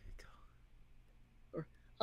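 Quiet pause with faint whispered, breathy voice sounds and one short voiced syllable near the end, over a low steady hum.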